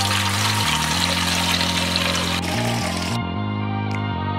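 Tap water pouring into a metal pot, over background music. The pouring cuts off about three seconds in, leaving only the music.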